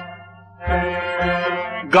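Kashmiri Sufi folk ensemble playing a short instrumental phrase: harmonium with sarangi and rabab over a steady drone, and a few low drum strokes. A sung note comes in right at the end.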